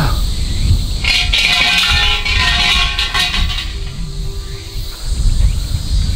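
Shinto shrine bell (suzu) shaken by its hanging rope: a metallic jangling with several ringing tones, starting about a second in and lasting about two seconds, then fainter lower ringing that dies away.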